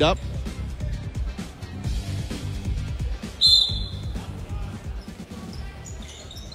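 Gymnasium sound with a basketball bouncing on the court floor, and a single short, high referee's whistle blast a little past the middle.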